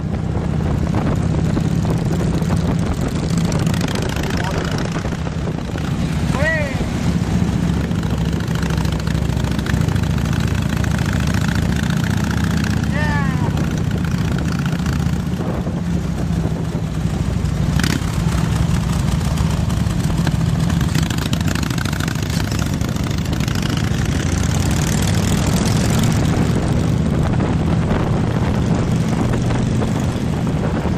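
Harley-Davidson V-twin motorcycle engines running steadily while riding at parade pace, with wind on the microphone. Two short whistle-like chirps sound about a fifth and about two fifths of the way in.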